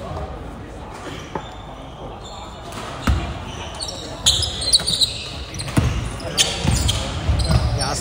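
Basketball bouncing on an indoor wooden court, with a first thud about three seconds in and a run of bounces from about six seconds, echoing in a large hall. Short high squeaks around the middle fit players' shoes on the floor.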